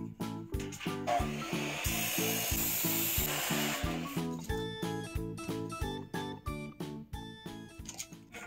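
Background music with a steady beat; from about a second in, for some three seconds, an abrasive cut-off saw grinds through steel square tubing.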